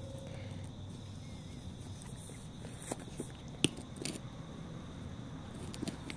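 Cat eating wet canned food: quiet chewing and smacking, with a few small clicks and one sharper click a little past the middle.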